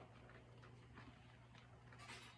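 Near silence: the electric pottery wheel spinner runs steadily at speed, giving only a faint low hum, with a few faint ticks.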